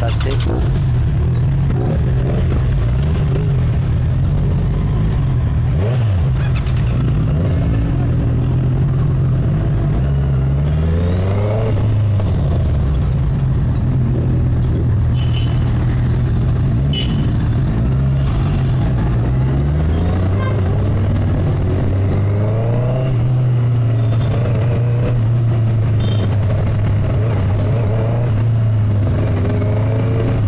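Sport motorcycle's engine running under way, its pitch rising as it accelerates through the gears twice, about ten seconds in and again around twenty seconds in, with steady road and wind noise.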